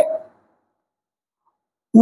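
A pause in a man's speech: his voice trails off in the first moments, then there is dead silence until he starts speaking again right at the end.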